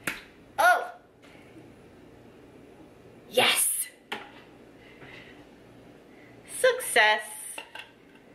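A woman's short wordless vocal exclamations, with a sharp click at the very start and a brief loud noisy burst about three and a half seconds in.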